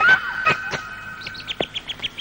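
Birds chirping: scattered calls, then a quick run of short chirps, about six a second, in the second half. A steady high tone runs underneath.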